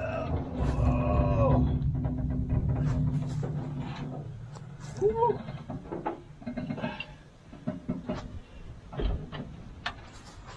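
A long, low moan-like groan while the heavy tilt hood of a 1959 Ford F850 cab-over is heaved up by hand, with a shorter groan about five seconds in. Scattered knocks and clicks follow.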